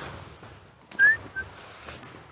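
A person's short whistle about a second in, rising slightly in pitch, followed by a second, briefer whistled note.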